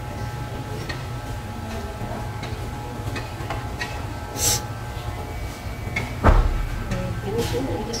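Corded electric hair clippers buzzing steadily as they cut a child's short hair, with a sharp knock about six seconds in.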